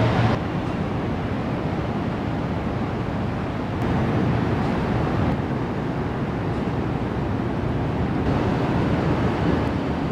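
Outdoor downtown street ambience: a steady, noisy rumble of traffic with wind on the microphone, the background shifting abruptly a few times as the clips change.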